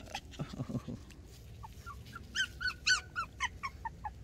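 A young puppy whimpering: a run of short, high, rising-and-falling whines, about four or five a second, starting a little past halfway.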